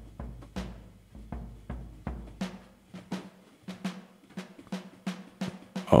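A sampled acoustic drum kit from Kontakt 7's Studio Drums plays a groove, several hits a second. The deep kick drum drops out about two and a half seconds in, while the lighter drum hits carry on.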